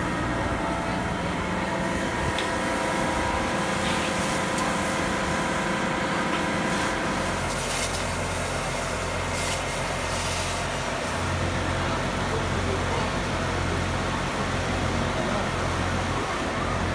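Fire engine running at a fire scene: a steady mechanical drone with several held tones, and a deeper hum that sets in about seven seconds in.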